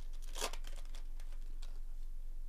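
Foil wrapper of a baseball card pack being ripped open: one short crinkling tear about half a second in, then a few faint rustles and clicks, over a low steady hum.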